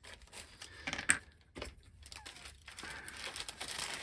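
Clear plastic zip-lock bag crinkling as small resin model parts are handled and put back into it, with a few light clicks in the first half as hard resin pieces are set down on a cutting mat.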